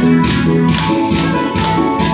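Trot music with a steady dance beat from a backing track, accompanying a live tenor saxophone. It holds sustained notes over a regular beat of about two strokes a second.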